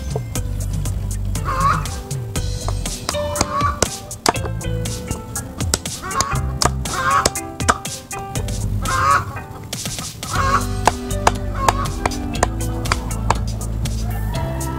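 A machete chopping and shaving green guava wood, an irregular run of sharp strikes, under background music that plays throughout.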